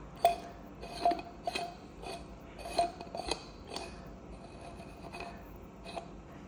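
Large glass bulb envelope of an induction lamp being screwed back onto its finned metal heat-sink base by hand: a run of small scraping clicks and ringing glassy clinks as glass and metal rub, thinning out after about four seconds.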